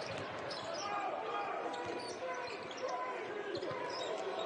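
Basketball arena sound during live play: a steady crowd murmur, with a basketball being dribbled on the hardwood court.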